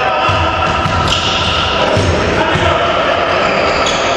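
A volleyball bouncing on a sports hall's wooden floor, a few dull thumps, over the murmur of voices in a large, echoing hall.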